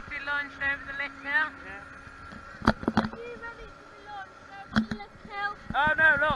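Voices of people around, with many short high-pitched calls and chatter, and a few sharp knocks partway through.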